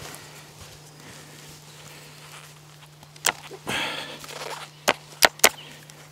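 A sharp snap, then a short burst of rustling in dry leaf litter, then three quick sharp snaps near the end.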